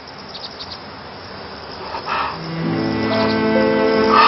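Background score of sustained bowed strings fading in during the second half and swelling, over faint outdoor ambience with high insect-like chirping.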